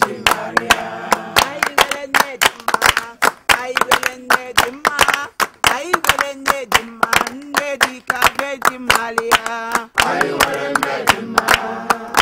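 A group of people singing a church song together while clapping their hands in a steady rhythm, about three claps a second; the claps are the loudest sound.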